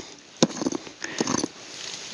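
A rock pick knocks once against stone in root-filled soil about half a second in. Short scraping, rustling sounds of digging follow.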